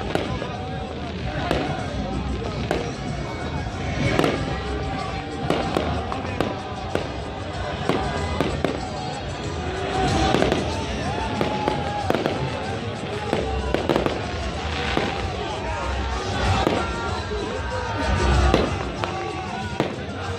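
Aerial fireworks shells bursting overhead in an irregular string of sharp bangs, about one or two a second, with a crowd's voices beneath.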